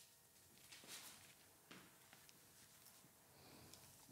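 Near silence: room tone with a few faint snips of haircutting scissors, about a second in and again shortly after.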